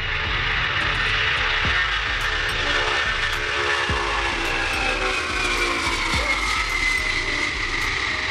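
Lockheed C-5M Super Galaxy's four turbofan engines at takeoff power as it lifts off: a loud, steady rushing noise with a high engine whine that slowly falls in pitch.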